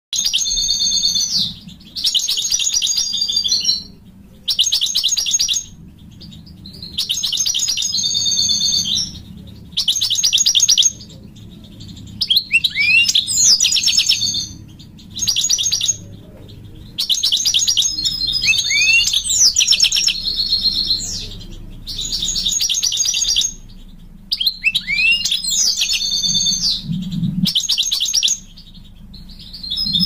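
Male European goldfinch singing, calling to a female, in repeated bursts of rapid high twittering notes, each burst a second or two long with short pauses between. A few phrases include quick falling whistles.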